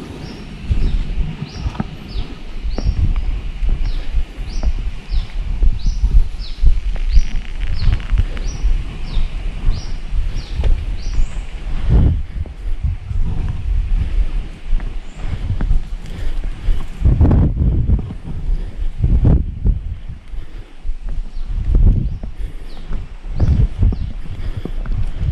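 A bird calls in a run of short, falling high notes, about two a second, through roughly the first half. Underneath, a low rumbling noise on the microphone runs throughout, broken by a few louder knocks in the second half.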